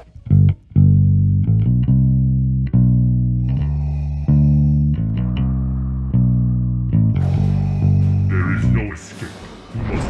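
Electric bass guitar, a four-string, playing a line of sustained low notes, one about every half second to a second. The notes stop about seven seconds in and give way to a noisy burst with a voice.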